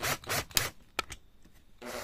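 A few short scrapes and two sharp clicks as a driver bit is set into a screw on a hard-drive motor's mounting plate. Near the end a power screwdriver starts up with a steady whir, driving the screw into the wooden board.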